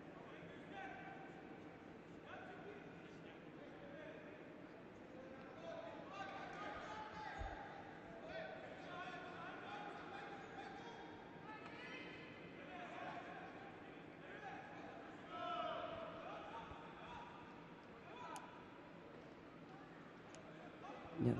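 Faint arena sound: distant voices calling out, echoing in a large sports hall. A single dull thud comes about seven and a half seconds in.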